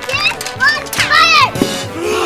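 Children shouting and squealing excitedly, with several high voices rising and falling, over background music with a steady beat.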